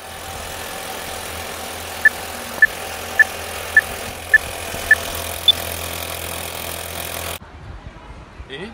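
Vintage film-countdown sound effect: a steady film-projector whir and hiss over a low hum, with six short beeps about half a second apart, then one higher beep. It cuts off abruptly near the end.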